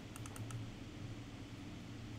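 A quick cluster of about four computer mouse clicks near the start, over a low steady hum.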